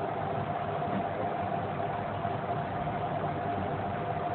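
Steady mechanical background hum with a faint constant tone running through it, unchanging throughout.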